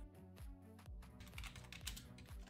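Faint typing on a computer keyboard, a scatter of quick keystrokes mostly in the second half, over faint steady background music.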